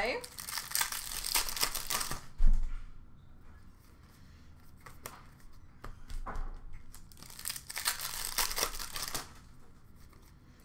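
Upper Deck hockey card pack wrappers being torn open and crinkled, in two spells of about two seconds each, with a single knock about two seconds in.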